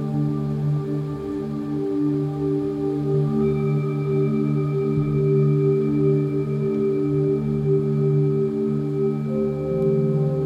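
Ambient meditation music of sustained, overlapping tones held steadily, with higher tones joining about a third of the way in.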